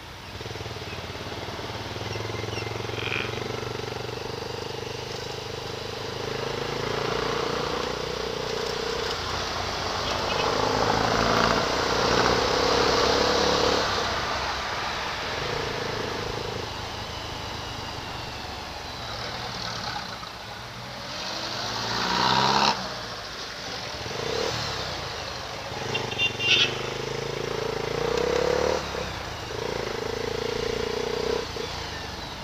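Motorcycle riding in traffic, its engine note coming and going and shifting in pitch with the throttle over a steady road and wind noise. There is a brief loud clatter about 22 seconds in.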